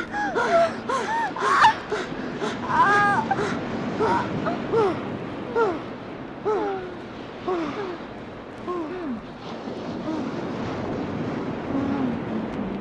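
A woman gasping and moaning in short, high cries that rise and fall in pitch, several a second at first and then about one a second, dying away near the end: comic lovemaking sounds from a 1970s comedy LP.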